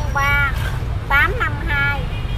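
Speech over a steady low rumble of street traffic.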